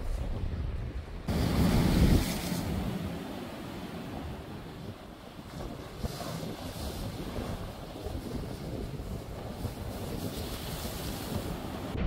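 Sea waves surging and breaking against concrete tetrapods on a breakwater, with wind buffeting the microphone. A loud wash of surf comes about a second in, and another surge builds near the end.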